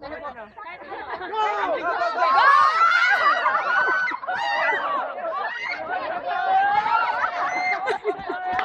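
A group of young people shouting and laughing together, many voices overlapping. The voices swell loudly about a second and a half in.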